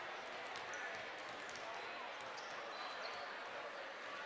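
Several basketballs bouncing on a hardwood gym floor and hitting the rim during warm-ups, over a steady murmur of crowd chatter in a large echoing gymnasium, with a couple of brief high squeaks.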